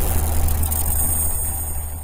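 Intro sound effect: a deep, steady rumble with a noisy wash above it, slowly fading out.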